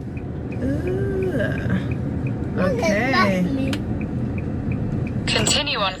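Car cabin with steady low road and engine rumble and the turn-signal indicator ticking evenly, about two to three ticks a second, as the car signals to leave a roundabout. Faint voices come in briefly about a second in and again about three seconds in.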